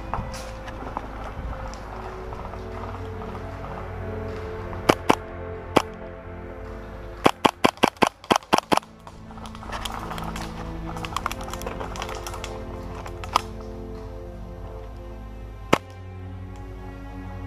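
Background music with airsoft rifle shots over it: a few single shots about five seconds in, then a quick string of about seven shots around the middle, and a few scattered single shots after.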